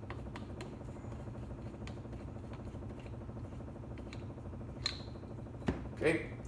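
Steady low hum with faint ticking as a tripod gimbal head's tension knob and its long screw are unscrewed by hand, then a couple of sharper clicks near the end as the knob comes free.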